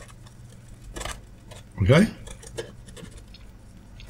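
Black marker pen scribbling over a piece of clear acrylic, a run of quick scratchy strokes.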